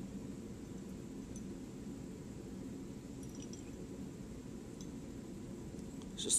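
Steady low background hum of a room with a few faint, light clicks scattered through it.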